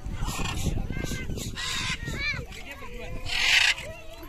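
Alexandrine parakeet calling in flight with short, harsh squawks, mixed with children's voices.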